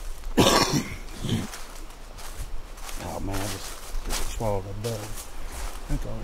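A man coughs hard once, about half a second in, the loudest sound here. He then makes two short murmurs near the middle, while footsteps crunch through the leaf litter.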